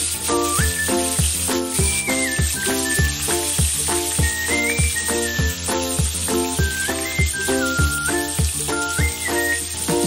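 Background music with a steady beat and a high stepping melody, over the steady sizzle of a whole tilapia starting to fry in oil in a pan.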